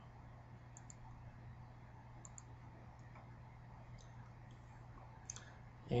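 A handful of faint computer mouse button clicks, some in quick pairs, spread over several seconds above a low steady hum.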